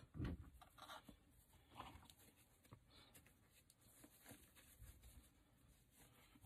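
Faint rustling and crinkling of wired fabric ribbon as it is measured out and pinched together into bow loops, in short scattered bursts with a few light clicks.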